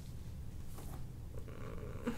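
A steady low rumble, with faint rubbing of gloved hands working over the shoulder and a brief hum near the end.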